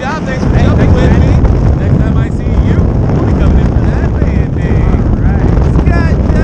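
Wind rumbling on the microphone of a wrist-mounted camera under an open tandem parachute canopy, with voices talking through it.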